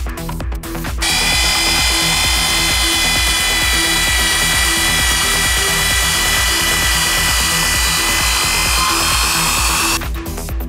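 Electric drill running at a steady speed with a sanding pad on a plastic headlight lens, a steady whine that starts suddenly about a second in and cuts off at the end. Electronic music with a steady beat plays under it.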